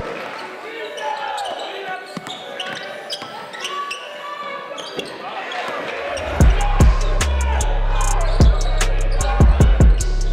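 Basketball game sound in a gym: a ball bouncing on the court with voices from the crowd and players. About six seconds in, backing music with a heavy drum beat comes back in.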